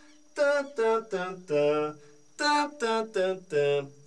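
A man's voice singing 'tan' on different pitches to imitate the tuning of his tom-toms, which skips an interval from one drum to the next instead of the usual thirds. It comes as two runs of four notes, the last note of each run held a little longer.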